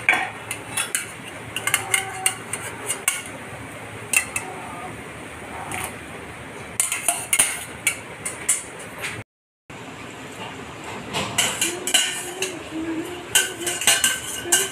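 Metal spoon clinking and scraping against an aluminium kadhai as watermelon rind pieces are handled in boiling sugar syrup: repeated sharp clinks in small clusters. The sound cuts out briefly a little past halfway.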